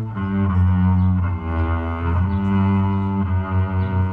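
Instrumental band passage: a cello bows long, sustained notes that change pitch about once a second, over acoustic guitar, bass and a djembe.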